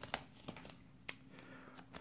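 Faint handling of a vinyl sticker sheet as a sticker is peeled from its backing: light crinkling with a few small clicks.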